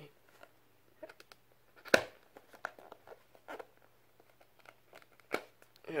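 Handling sounds from a DVD case stuck inside its cardboard slipcase as hands try to work it loose: scattered scrapes and clicks, the loudest a single sharp click about two seconds in.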